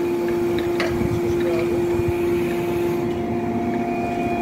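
A machine running steadily, giving a hum that holds one pitch without change, with a faint click about a second in.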